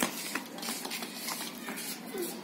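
Footsteps and scuffs of rubber flip-flops on dirt ground, a string of irregular short clicks and shuffles.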